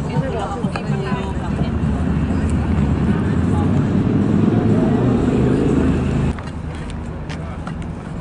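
City street traffic: voices at first, then a loud low rumble of road vehicles that builds for a few seconds and cuts off suddenly.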